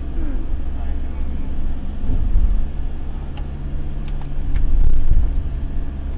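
Low engine and road rumble inside a moving minibus cabin, swelling louder about two seconds in and again about five seconds in, with a steady low engine hum.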